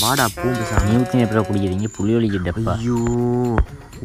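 A man wailing in long drawn-out cries, the last held on one pitch and cut off sharply near the end.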